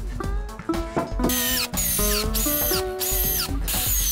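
A power drill driving screws in five short bursts, starting about a second in, its high whine dropping in pitch as each screw bites, over background music.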